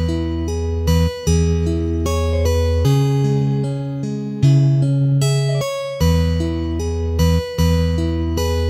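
Solo fingerstyle guitar in E major at a slow tempo, sustained bass notes under a picked melody, the opening bars of the arrangement just begun.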